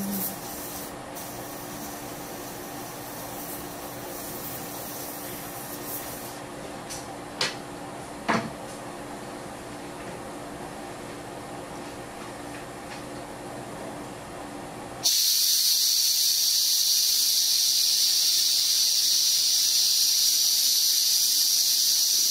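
Compressed air hissing steadily from a dental air-driven instrument. It starts abruptly about fifteen seconds in and is the loudest sound. Before it there is a low steady hum with two short clicks.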